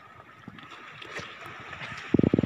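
Small wood campfire burning, a few faint crackles over a steady outdoor hiss.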